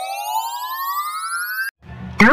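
Electronic 'loading' transition sound effect: a buzzy synthetic tone gliding steadily upward in pitch, then cutting off suddenly near the end.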